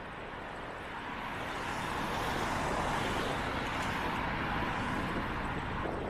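Road traffic heard from a moving bicycle: a car passes, its tyre and engine noise swelling to a peak about two to three seconds in and then easing off, over a steady rush of road and wind noise.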